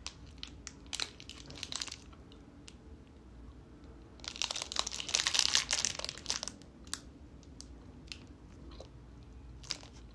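Crinkling and tearing of a plastic protein-bar wrapper being opened and handled, with scattered sharp crackles at first, a louder stretch of dense crinkling midway lasting about two seconds, then a few isolated crackles while a bite is chewed.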